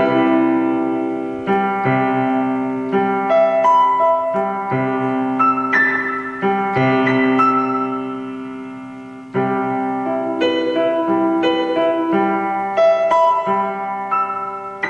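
Electronic keyboard in a piano voice playing open-voiced chords split between both hands, built around C major seventh. Chords are struck every second or two and fade between strikes, with higher melody notes picked out above them.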